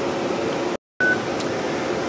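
Steady ventilation hum of an air-handling system. Three-quarters of a second in the sound cuts out completely for a moment, then comes back with a short, high single beep.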